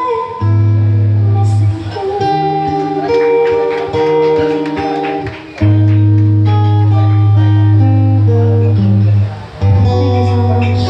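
An acoustic guitar plays held chords over a strong bass line, with a woman singing in places.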